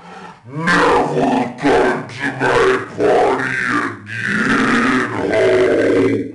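A man growling and roaring in an exaggerated, menacing villain voice, in several drawn-out growls with wavering pitch.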